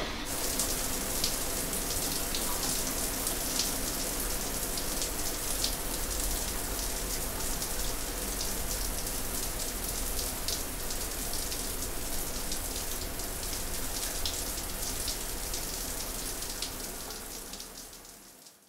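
Steady rain, a dense run of small drop ticks, fading out near the end.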